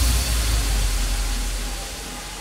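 Trance-music breakdown: the kick drum drops out and a loud white-noise wash over a deep sub-bass boom fades away.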